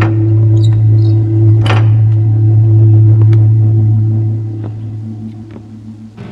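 Horror-film background score: a loud, steady low drone, with a sharp hit at the very start and another about a second and a half in, fading somewhat toward the end.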